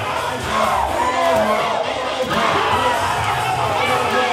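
A large indoor crowd shouting and cheering over loud music.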